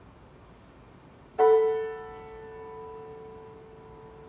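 A grand piano: after a silent pause, a single chord is struck about a second and a half in and left to ring, dying away slowly.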